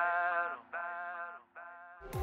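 Worship band's closing sung phrase: voices hold three short notes, each sliding down in pitch as it stops, over a low held tone, fading away toward the end.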